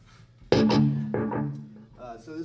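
Electric guitar through an amplifier: a sudden loud note or chord about half a second in, a second one a little later, both ringing out and fading.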